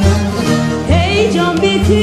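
Turkish folk ensemble music: bağlama-family long-necked lutes playing over a steady drum beat, with a melody line that slides in pitch about a second in.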